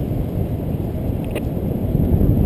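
Wind rushing and buffeting over the microphone of a camera carried by a paraglider in flight: a steady low rumble of air, with a faint click about a second and a half in.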